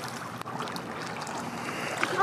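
Steady hiss of small waves lapping on a lakeshore, with light wind on the microphone.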